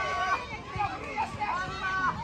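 Children shouting and calling out while playing soccer, several high voices overlapping, with a long held call at the start and another near the end.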